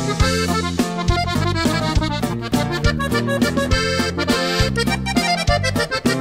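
Accordion-led norteño music with a steady, rhythmic bass: an instrumental passage between the sung verses of a corrido.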